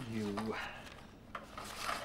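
Paper envelope being slid across a table: a soft rubbing scrape, with a light tap partway through.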